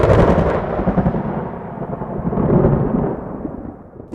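A sudden loud boom that rolls on as a low rumble, swells again about two and a half seconds in, then fades away: a thunder-like transition sound effect laid over a cut to black.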